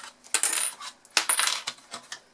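Small metal clips being unclipped from a card gift box and set down, giving a few short metallic clinks and paper rustles.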